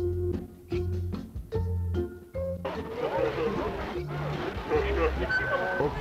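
Electronic organ music with a stepping bass line for the first few seconds, then many voices chattering at once over the music from a little before the middle onward.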